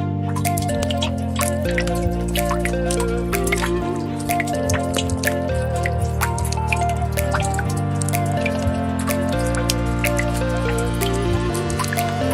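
Wet water beads pouring out of a plastic jug and landing on a cement surface, a dense, irregular run of small clicks and drips that starts as the pour begins. Background music with slow sustained chords runs under it.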